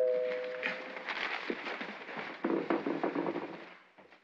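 Two-tone doorbell chime ringing out, its lower second note fading away over the first second. A denser, crackly stretch of clicks and noise follows for about three seconds and stops just before the end.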